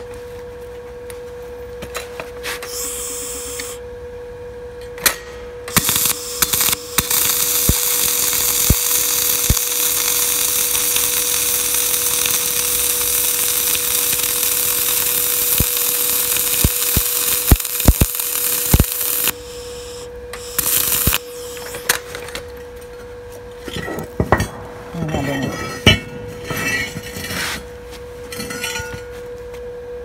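Electric arc welding on steel channel: a few short arc strikes, then a steady crackling, sizzling arc held for about twelve seconds from about seven seconds in, followed by shorter bursts and metallic clicks. A steady humming tone runs underneath.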